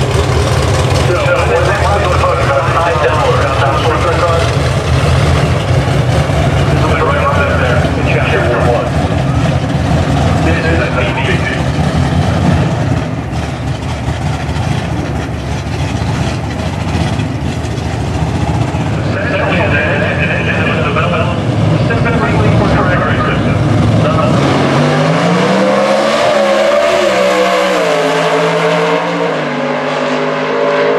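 Top Sportsman drag car's engine running loudly at the starting line, then launching at full throttle about 24 seconds in: the engine note climbs, drops back at each gear change and climbs again as the car pulls away down the track.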